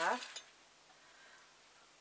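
A woman's voice trailing off at the end of a word, then near silence: faint room tone.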